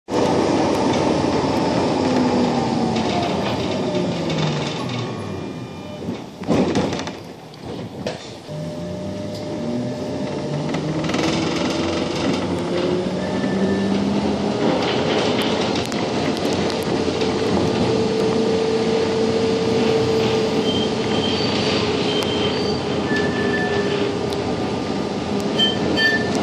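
Budapest tram's traction motors whining, with wheel and track rumble: the whine falls in pitch as the tram slows over the first several seconds, a few sharp clicks come about 6 to 8 seconds in, then the whine rises as it speeds up again and holds steady while it cruises.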